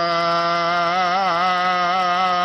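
A man's voice chanting a Sikh hymn (Gurbani), drawn out into one long held note at a steady pitch with a slight waver.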